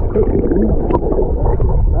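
Muffled, dense low rumble and gurgle of river water heard by a camera held underwater.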